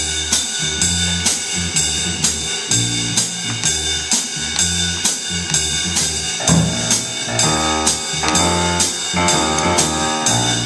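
A student jazz combo plays. The drum kit keeps time with strokes about twice a second over a bass playing a repeating bass line, and higher-pitched instruments join in about six and a half seconds in.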